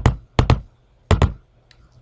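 Three sharp clicks about half a second apart, the later two each doubled like a button press and release, as the keys 2, 0 and ENTER of an on-screen TI-83 Plus calculator are clicked to finish typing sin(120).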